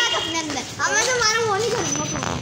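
Children's voices talking and calling out, one high-pitched voice speaking about a second in.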